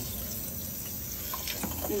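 Kitchen faucet running steadily into a sink, the stream splashing over a computer keyboard held under it for rinsing.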